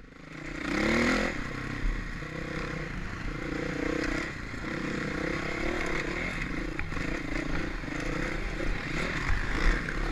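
2006 Honda CRF450R's single-cylinder four-stroke engine, its revs rising and falling with short bursts of throttle as it rides a rough dirt trail, with a climb in pitch about a second in. A few sharp knocks and clatter come from the bike over the rocky ground.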